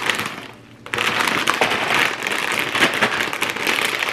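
Plastic bag of frozen broccoli florets crinkling and crackling as it is squeezed and handled, with many small clicks; it starts about a second in after a short quiet moment.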